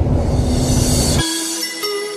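Car cabin road noise at highway speed: a loud steady low rumble with a low hum and a hiss that swells toward the end. About a second in it cuts off abruptly and light music with plucked notes takes over.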